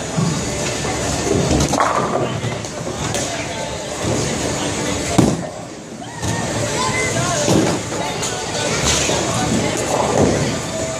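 Bowling alley din: background music and voices over rumbling balls and clattering pins. A sharp thud about five seconds in is a bowling ball landing on the wooden lane as it is released.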